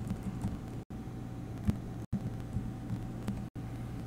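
Steady low electrical hum and room noise picked up by the recording microphone, cutting out completely for an instant three times, with a faint soft tap near the middle.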